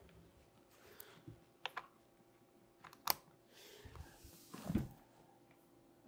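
Faint clicks and rustles of a charger cable being handled and plugged into a Onewheel XR's charge port, with a soft low thump near the end.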